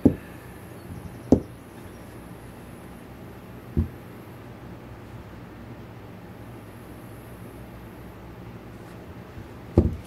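Several dull knocks of a spool of sinew bumping and being set down on a tabletop while a shirt is tied: one right at the start, one about a second in, one near the four-second mark, and a doubled knock near the end.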